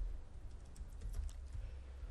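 Computer keyboard being typed on: a handful of separate keystroke clicks, over a steady low hum.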